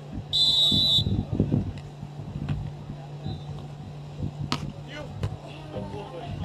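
Referee's whistle, one short shrill blast about half a second in, signalling the server to serve. Two sharp smacks follow later on, over a steady low hum.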